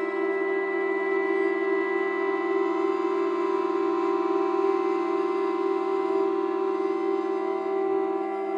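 Contemporary chamber music: a steady, unbroken drone of several held pitches sounding together, with the strongest tone in the lower middle range and fainter higher tones above it.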